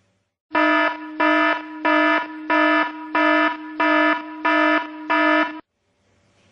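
An electronic alarm sounder giving a buzzy tone of one steady pitch that pulses louder and softer about one and a half times a second, eight pulses in all. It starts suddenly and cuts off abruptly.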